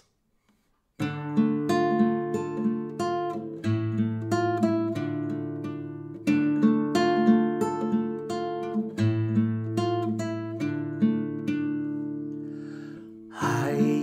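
Classical guitar playing a slow lullaby introduction of plucked broken chords with a steady bass, starting about a second in. A man's singing voice comes in near the end.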